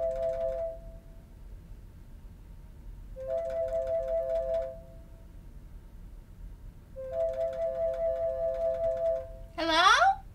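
An outgoing call ringing: a two-note electronic trill that rings three times with pauses between. The first ring is already under way and stops just after the start; the other two each last about one and a half to two and a half seconds.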